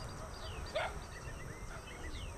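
Quiet outdoor farmyard ambience with faint, brief bird chirps, and a single short animal call about a second in.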